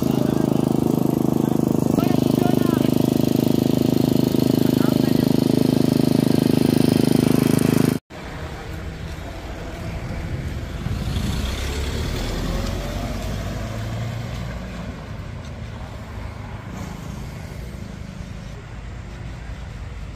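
Walk-behind petrol lawn mower engine running steadily, cutting off abruptly about eight seconds in. After that, a quieter low rumble of street traffic that swells for a few seconds.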